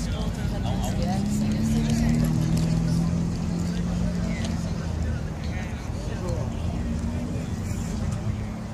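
A car engine running with a steady low hum that eases off about five seconds in, under people chatting.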